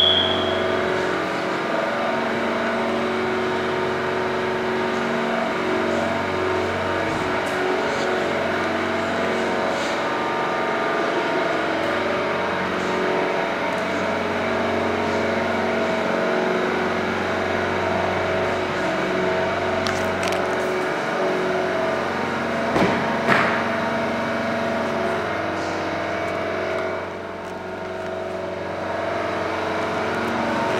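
Mazda 6 2.2-litre diesel engine idling steadily, with a couple of short knocks about two-thirds of the way through.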